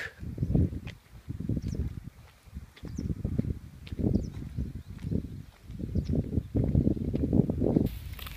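Footsteps of a person walking on wet pavement, heard as a run of dull, irregular low thumps on a handheld camera's microphone.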